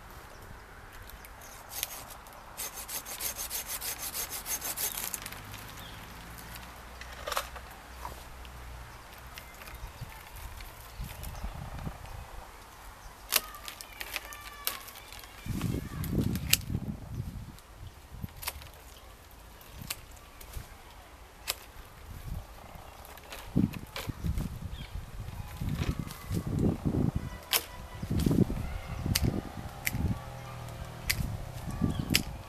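Hand pruning shears cutting twigs and branches on an apricot tree: a series of sharp snips scattered through, with a fast rattle a few seconds in and bursts of low rumbling and rustling as the branches are handled.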